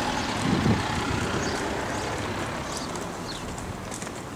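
Street traffic noise: the steady rush of a vehicle going by on the road.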